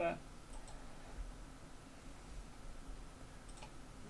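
Faint computer mouse clicks, a quick pair about half a second in and another pair near the end, over quiet room tone.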